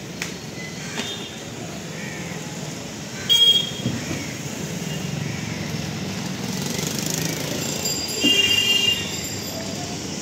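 Street traffic noise with two vehicle horn honks: a short one about three seconds in and a longer one near the end.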